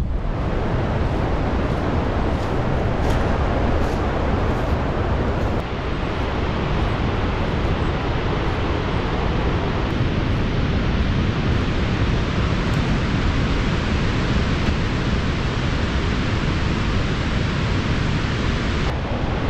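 Steady rushing of water pouring down the broad stepped spillway of Dartmouth Dam, a full reservoir overflowing its crest.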